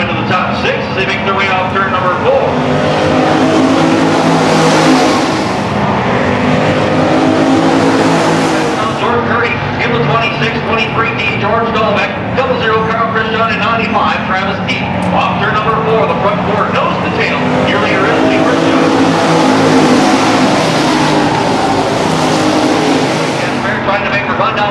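Dirt-track stock cars racing around the oval, their engines rising and falling in pitch as they accelerate and lift. The sound swells twice, about three seconds in and again from about seventeen seconds, as cars pass closest.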